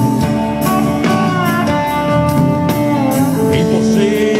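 Live rock band playing an instrumental passage through a PA, electric guitar leading with bent notes over bass and drums.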